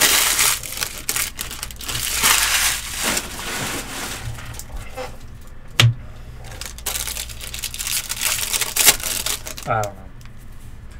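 Crinkling and rustling of foil-wrapped baseball card packs being handled, in bursts during the first four seconds. There are a couple of sharp taps later on.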